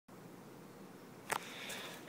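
Quiet room tone with one sharp click a little past halfway and a fainter one after it: handling noise from the handheld camera.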